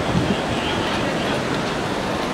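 Steady ambient noise of a busy airport entrance: an even rumbling hiss with no distinct events.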